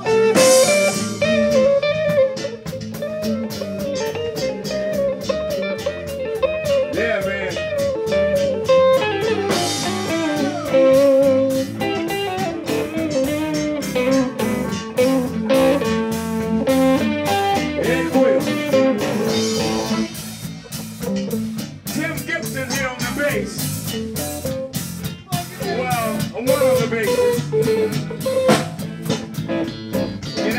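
Live blues-funk band playing, with an electric guitar lead of bending, sliding notes over electric bass and a steady drum-kit beat.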